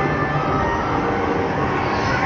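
Steady, loud outdoor din of a busy theme park: a dense rumble with no single clear source.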